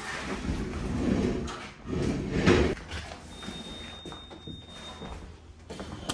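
A door being opened, with scraping and shuffling noise and a louder scrape about two seconds in. A faint, steady, high tone sounds for about two seconds in the middle.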